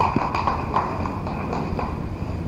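A small audience applauding: a dense spread of irregular hand claps.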